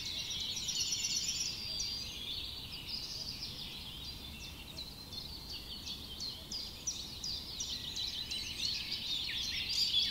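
A dense chorus of small birds chirping, with many quick overlapping chirps and no pause, growing louder near the end.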